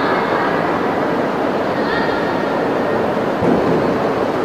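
Steady hall noise with indistinct voices in the background. Near the end come a few dull thumps as the gymnast runs and springs off the sprung floor-exercise mat into a tumble.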